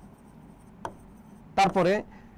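Felt-tip marker writing on a whiteboard, faint, with one short tap of the marker against the board a little under a second in. A man's voice starts near the end.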